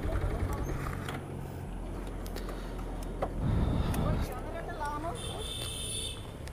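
Motorcycle engine idling, low and steady, with faint voices talking in the background around the middle.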